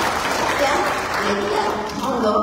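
An audience applauding, the clapping thinning out near the end as a woman starts speaking again.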